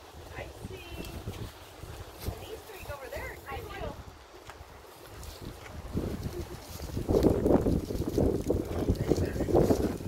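Wind rumbling on a phone microphone, with faint distant voices. The rumble grows louder and rougher over the last few seconds.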